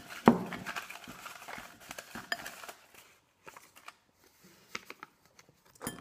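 Folded paper slips rustling as a hand stirs through them in a glass bowl, with a sharp click against the glass just after the start. After about three seconds the rustling thins to a few faint crinkles.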